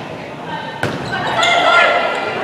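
One sharp smack of a volleyball being hit, a little under a second in, then high voices calling out during the rally, echoing in a large gymnasium.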